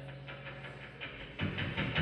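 Quiet lull in a live band's playing: faint held tones die away over a soft, quick ticking, then low thumps come in about one and a half seconds in as the band starts back up.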